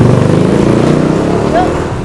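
Motor vehicle engine running close by, a steady low rumble that eases off toward the end, with voices in the background.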